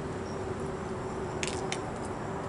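Outdoor background noise: a low steady rumble with a steady hum, broken by two short clicks about one and a half seconds in.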